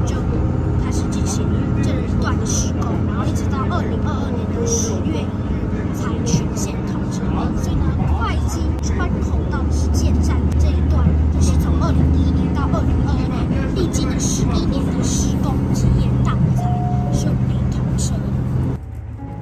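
Diesel railcar's running noise heard from inside the passenger cabin: a steady low drone with track rumble, growing a little louder about halfway through.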